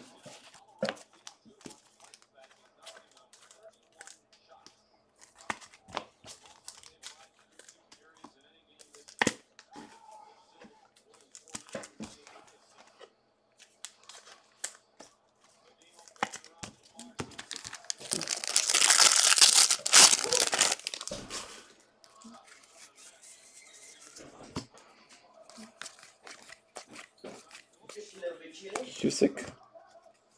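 A foil card pack being torn open, with a few seconds of loud tearing and crinkling about two-thirds of the way through. Scattered light clicks and rustles of the wrapper and cards being handled come before and after it.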